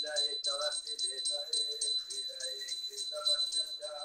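A small metal hand bell rung rapidly and without pause, its high ring sustained under quick, even strokes, over people's voices.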